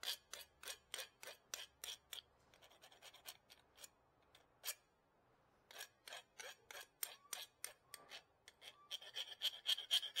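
Steel hand file rasping back and forth across a new brake pad, about three strokes a second. The strokes stop for a few seconds in the middle, then resume and grow louder near the end. The pad is being filed down so that it will fit in the caliper.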